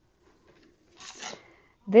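A brief rubbing scrape about a second in, as a quilting ruler and marker are moved over cotton fabric while a cutting line is marked out. A woman starts speaking at the very end.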